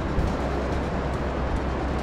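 Steady beach noise: surf with a constant low wind rumble on the microphone.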